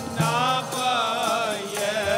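Sikh kirtan: a harmonium and tabla accompanying chanted devotional singing.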